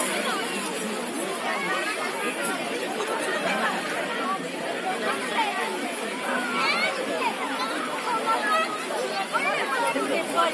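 Many people talking over one another in a steady, indistinct chatter.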